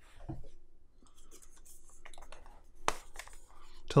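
Soft rustling of a folded paper certificate being handled and unfolded over an open cardboard ink box, with one sharp tap about three seconds in.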